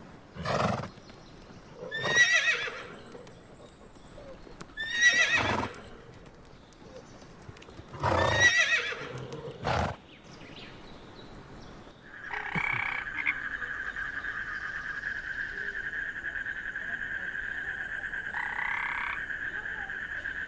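Horses whinnying: a series of loud, wavering neighs, with shorter calls in between, over the first half. About two-thirds of the way in, a steady high-pitched trill takes over and carries on unbroken.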